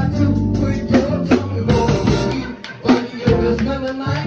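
Live band playing: electric bass holding low notes under a drum kit beating a steady rhythm.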